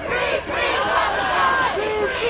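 Crowd of protest marchers chanting and shouting together, many voices at once. The chant falls into an even syllable rhythm near the end.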